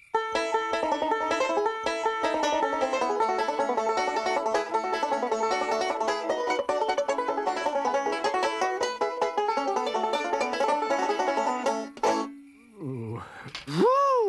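Banjo picked fast, a rapid bluegrass-style run of many plucked notes that stops suddenly about twelve seconds in.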